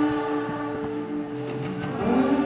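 Live band music with no singing: a chord held and ringing steadily, as a few sustained tones, with faint picking ticks.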